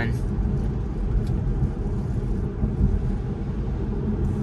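Steady low road and tyre rumble inside a Tesla's cabin as it drives on a wet road, with no engine sound under it.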